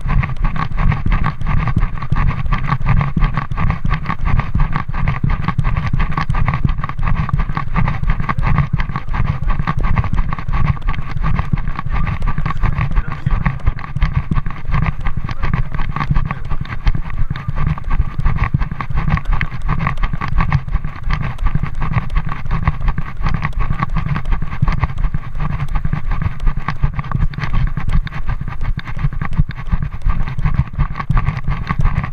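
Loud, steady rumbling and scuffing noise on the microphone of a camera carried on the move, jolting with the wearer's walking and then running steps.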